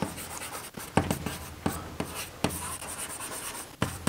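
Chalk writing on a chalkboard: scratchy strokes broken by a few sharp taps as the chalk strikes the board.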